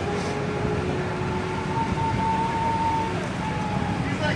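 Steady low outdoor rumble, typical of road traffic, with a faint steady tone for about a second near the middle.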